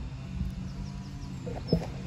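Small birds chirping faintly in short quick notes over a steady low rumble, with one sharp knock near the end.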